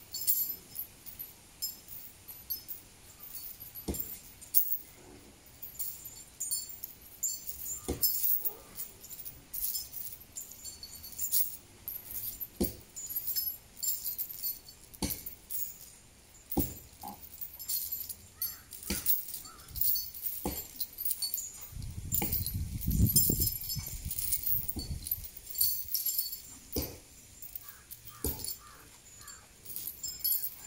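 Metal chain on a walking elephant clinking and jingling in short, irregular bursts with its steps. A low rumble rises between about 22 and 25 seconds in.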